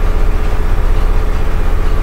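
A loud, steady low rumble with a rapid flutter and a hiss over it, like a motor or engine running.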